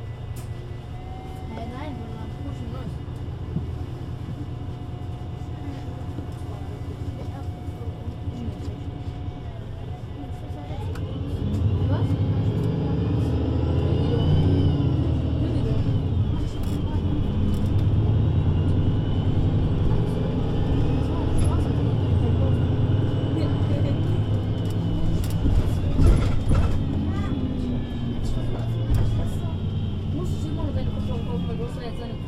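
2013 VDL Citea LLE 120 city bus with a Voith automatic gearbox, heard from on board: the engine runs low and steady for about ten seconds, then the bus pulls away and the engine and gearbox whine climb in pitch as it accelerates, settling into a long, slowly rising drive.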